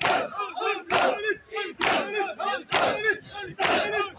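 A crowd of mourners beating their chests in unison for matam, one hard slap about every second, five times, while their chanted lament voices fill the gaps between the strikes.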